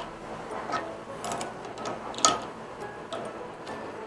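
A few faint, scattered small metal clicks from handling the collet wrench and collet nut on a CNC router spindle just after fitting the bit. The sharpest click comes just past the middle.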